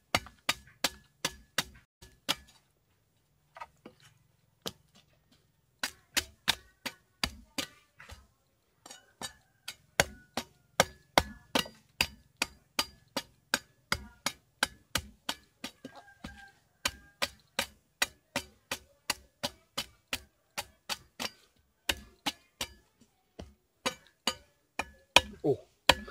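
Machete chopping the fibrous husk of a young green coconut, trimming it down to open it for drinking: sharp chops, a few scattered ones with a pause of several seconds near the start, then a steady run of about two to three chops a second.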